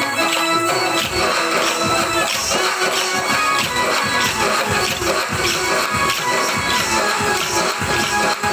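Kolatam bhajan music: an electronic keyboard and a drum, with many short clacks as the dancers strike their wooden sticks together in rhythm.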